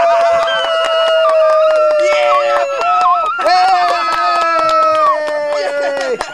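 Men's long, drawn-out celebratory yells, each held note sliding slowly down in pitch. One yell breaks off near the three-second mark and another starts about half a second later, with a second, lower voice joining it.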